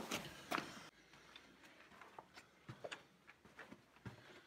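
Handling noise from fumbling with a camera and its light: a few sharp clicks and scuffs in the first second, then near quiet with scattered faint ticks.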